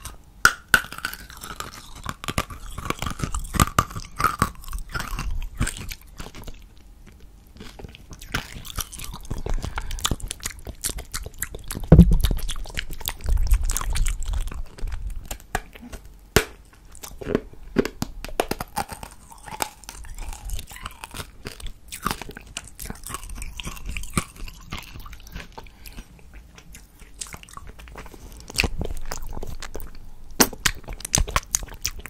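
Close-miked mouth sounds of licking and sucking a hard candy cane: a dense, irregular run of wet clicks and smacks, with one loud low thump about twelve seconds in.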